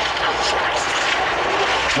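Steady rushing noise with a faint continuous hum: the background hiss and room noise of an old cassette recording, heard with no voice over it.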